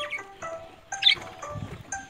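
Background music of plucked-string notes, with a brief high squeak about a second in.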